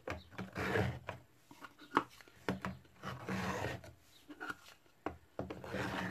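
MDF drawers sliding into the slots of a wooden MDF storage unit: wood scraping against wood in three drawn-out rubs, with a few light knocks as the drawers meet the frame.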